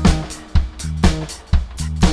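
Live rock band playing an instrumental passage: drum kit, bass and electric guitars, with sharp drum hits about every half second and the sound dropping back between them.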